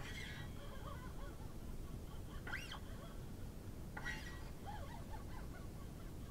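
Faint, unamplified sound of the freshly fitted D'Addario XS coated strings on a 1967 Gibson ES-335 being played by hand, with fingers sliding along the strings in a few short squeaking glides that rise and fall, about two and a half and four seconds in.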